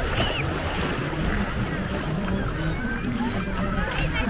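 Shallow surf washing and waves breaking, with wind rumbling on the microphone. Faint high-pitched calls of people carry over it near the start and again near the end.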